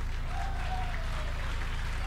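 Wrestling arena crowd applauding after a near-fall kick-out, over a steady low hum.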